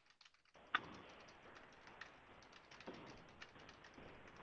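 Faint, scattered clicks of a computer keyboard, a few keystrokes spread out rather than steady typing, the loudest about three-quarters of a second in.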